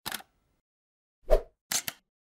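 Logo-animation sound effects: a short click at the start, a louder pop about 1.3 s in, then a quick pair of clicks near the end.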